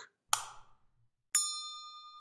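A single key click, then about a second later a sharp bell-like ding that rings on at a steady pitch, fades slowly and stops abruptly.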